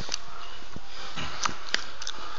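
Sniffing and breathing through the nose from wrestlers grappling on a mat, with a few short, faint clicks over a steady hiss.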